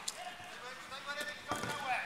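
Players' voices calling across a five-a-side football pitch, with a football thudding firmly once about one and a half seconds in.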